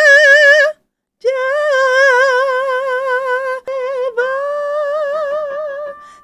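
A woman belting long, sustained high notes around D5 with wide, even vibrato. There are three held phrases: the first cuts off less than a second in, and after a short gap come two long notes with a brief break between them.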